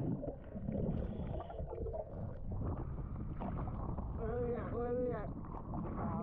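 Water sloshing and rumbling against an action camera's waterproof housing as it moves through choppy sea at the surface, a steady low churning. About four to five seconds in, a short muffled voice-like call sounds over it.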